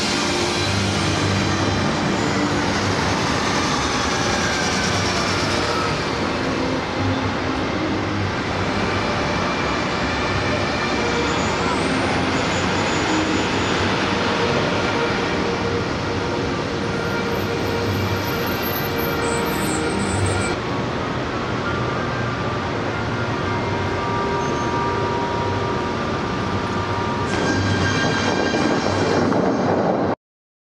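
Water jets of the Bellagio fountain show spraying in a steady, dense rush, with the show's music playing underneath; it swells a little near the end.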